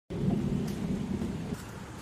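A steady low rumble that cuts off abruptly about a second and a half in.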